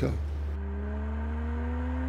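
Morgan Supersport's engine note rising slowly and steadily in pitch as the car accelerates, over a steady low hum.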